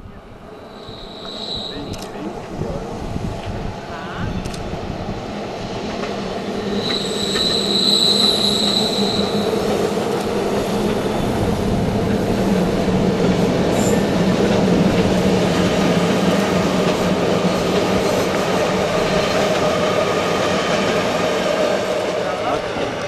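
Rhaetian Railway Allegra electric multiple-unit train approaching and running past close by. It grows louder over the first eight seconds and then stays loud and steady. A high wheel squeal comes about a second in and again from about seven to nine seconds.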